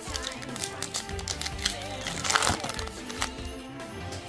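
Background music playing over the crinkling of a foil Pokémon TCG booster pack wrapper as it is opened by hand; the loudest crinkle comes a little past halfway.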